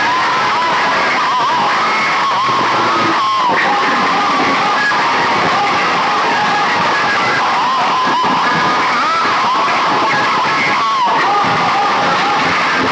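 Loud music from banks of horn loudspeakers on a sound-system rig, staying at a steady high level, with a wavering melody line running through it.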